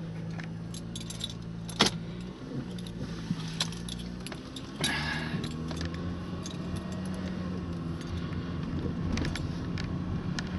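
A car's engine running and road noise heard inside the cabin while driving, with many small clicks and rattles, a sharper click about two seconds in. The engine noise grows louder about five seconds in.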